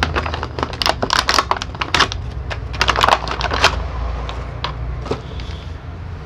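Clear plastic packaging crinkling and crackling as it is handled, with quick crackles packed closely for the first four seconds or so, then sparser. A steady low hum runs underneath.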